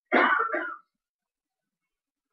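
A short vocal burst from a person, lasting under a second near the start.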